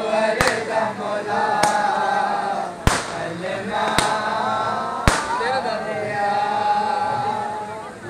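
Crowd of men chanting together in unison, with five sharp bangs about a second apart cutting through the chant, the third the loudest.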